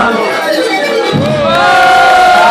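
Concert crowd cheering and shouting as the song finishes, swelling about a second and a half in with long held shouts.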